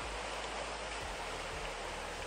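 Steady outdoor background hiss, an even noise with no distinct events.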